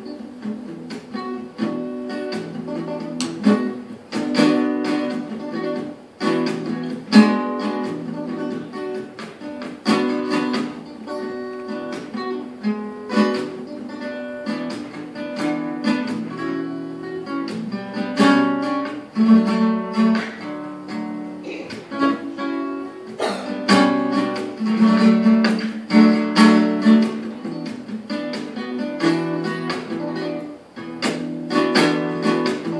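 Solo acoustic guitar playing, a mix of plucked single notes and strummed chords that rise and fall in loudness.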